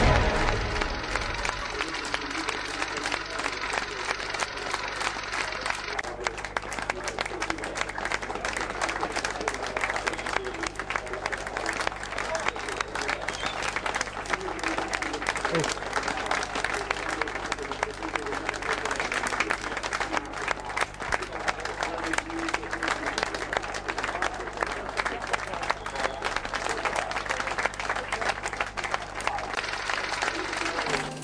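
A group of people applauding, clapping steadily for a long stretch, with voices mixed in.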